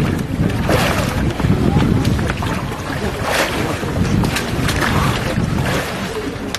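Water splashing in an ice hole as a bather dunks under and comes back up, with wind rumbling on the microphone.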